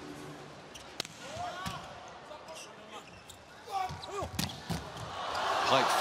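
Indoor volleyball rally: sharp strikes of the ball, sneakers squeaking on the court, and crowd noise swelling near the end.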